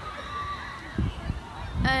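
Quiet open-air background with faint wavering distant voices and a few low thumps around a second in. Near the end a girl's voice starts a long, level 'um'.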